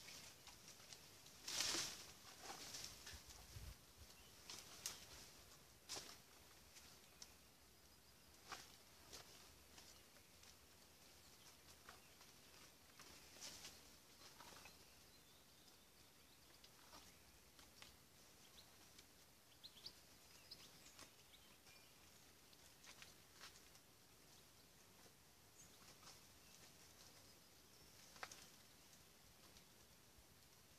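Near silence broken by faint, scattered rustles and snaps of branches and leaves as a person climbs a tree, the loudest about two seconds in. A few faint bird chirps lie underneath.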